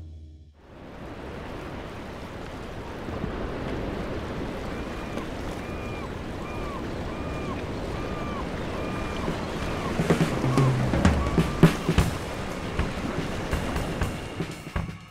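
Sea waves washing onto a beach, a steady surf hiss. Midway through, a short arching call repeats about nine times, and near the end scattered drum and cymbal hits come in.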